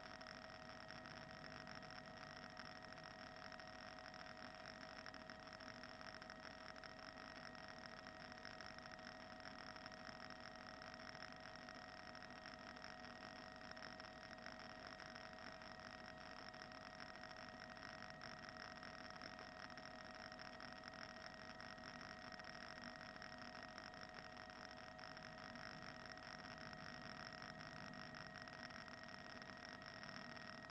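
Near silence: a faint, steady electronic hum and hiss with a few fixed tones, unchanging throughout, typical of an idle broadcast feed.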